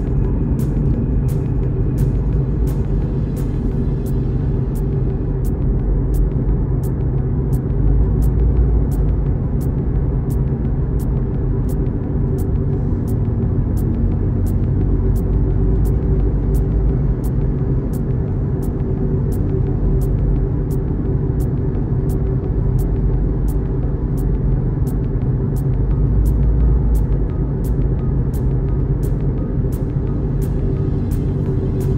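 Steady low rumble of a car's engine and tyres heard inside the cabin while driving at road speed, with music playing over it that has an even ticking beat about twice a second.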